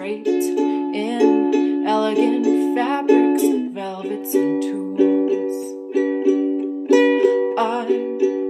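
Ukulele played in a steady rhythm of plucked chords, with a woman singing lines of a folk song over it.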